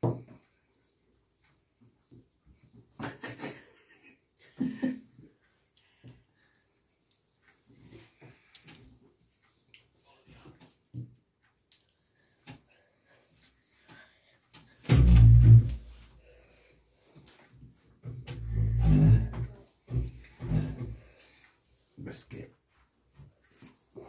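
Small magnetic game stones being set down one at a time on a cloth-covered table, giving scattered soft clicks and knocks. Two louder, low, muffled rumbles come about fifteen and nineteen seconds in.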